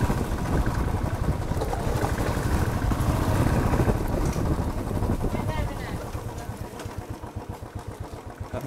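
Royal Enfield Classic 350's single-cylinder engine running at low speed on a rough dirt track. Over the last couple of seconds it quietens and its separate beats become distinct as the bike slows.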